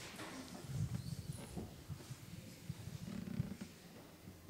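Handling noise from a handheld microphone: irregular low bumps and rustles as the person holding it moves around and sits down.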